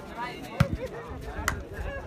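A volleyball struck by players' hands twice, two sharp slaps about a second apart.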